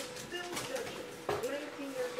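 Faint, indistinct voice-like sounds in the background over a steady hum.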